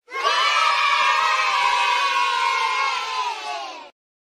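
A group of children cheering and shouting together in one long held cheer, starting suddenly and cutting off abruptly just before the end.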